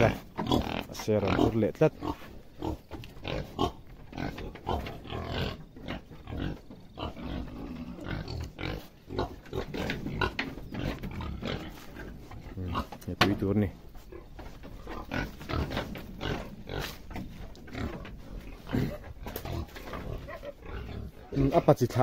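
Domestic pigs grunting over and over in short, irregular grunts.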